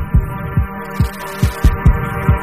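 A song received over FM radio from KTSM 99.9 El Paso, picked up long-distance by sporadic-E skip, with a heavy bass-drum beat under a steady chord. The sound is thin, with little treble.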